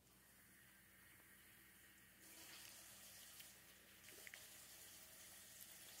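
Near silence: a faint steady hiss that gets a little louder about two seconds in, with a few faint ticks.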